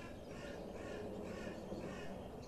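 Faint bird calling in a quick series of short, repeated calls, about three a second, over a low steady outdoor background.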